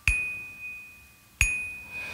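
Small tabletop glockenspiel struck twice with mallets on the same high note, about a second and a half apart, each note ringing on and fading.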